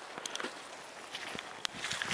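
Footsteps on a muddy track: a few soft, scattered steps and clicks.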